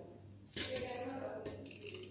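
Drained, soaked rice being tipped into an empty stainless-steel pressure cooker, a noisy pour that starts about half a second in.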